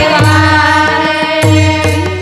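Marathi devotional gavlan song performed live: women singing long held notes into microphones over instrumental accompaniment, with a steady drone and a repeating low drum-like pulse.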